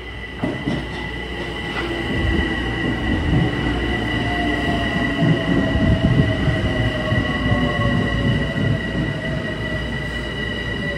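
Metro-North commuter train running past a station platform. Its wheels rumble louder as it comes alongside, a steady high-pitched wheel squeal runs throughout, and a whine slowly falls in pitch through the second half.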